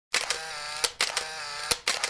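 Electronic intro sound effect: the same synthesized tone repeated, each about two-thirds of a second long, starting sharply and ending with a click; two play in full and a third starts near the end.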